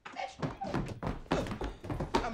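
A sudden run of heavy thuds and bangs, several in quick succession, starting abruptly out of silence.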